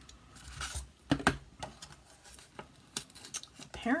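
Handling of a plastic Pine Tree paper punch and cardstock: paper rustling, then a few sharp plastic clicks a little over a second in, followed by scattered lighter clicks as the card is slid out and the punch is set down.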